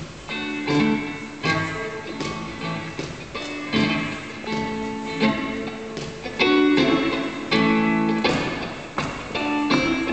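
A guitar alone playing the opening of a live rock-and-roll song, striking chords one after another and letting each ring.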